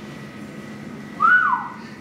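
A single short whistle just past the middle, rising briefly and then sliding down in pitch, over low room tone.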